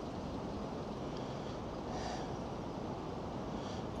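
Steady wind rumble on the microphone, with a couple of faint soft rustles.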